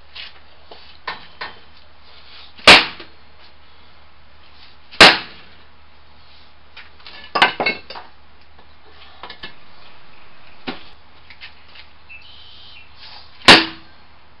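Concrete patio-slab pieces being handled and set down on cinder blocks: three sharp stone-on-concrete knocks, about two seconds in, about five seconds in and just before the end, with a quick cluster of smaller clacks in between and a few light taps.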